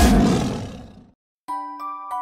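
A cartoon T. rex roar that fades out over about a second, followed by a brief silence. Then a chiming lullaby melody of bell-like notes begins.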